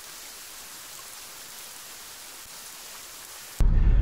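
A steady, even hiss. About three and a half seconds in, it is cut off abruptly by the low rumble of road noise heard inside a moving car.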